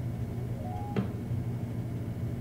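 A steady low hum with one sharp click about a second in, which fits the plastic block being set on the light box.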